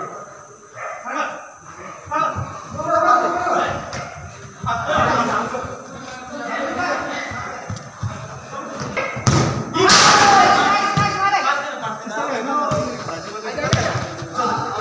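Futsal players calling and shouting to one another, with several sharp thuds of the ball being kicked, the loudest a little after the middle, in a roofed hall.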